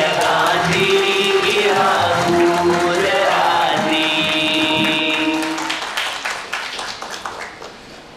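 A song with long held sung notes that change pitch every second or so, fading out over the last two seconds.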